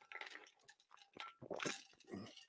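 Faint swallowing as a man drinks from a metal tumbler: a few soft gulps near the start and again about a second and a half in.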